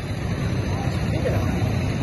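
Steady low hum of an idling motor-vehicle engine over street noise, with faint voices in the background.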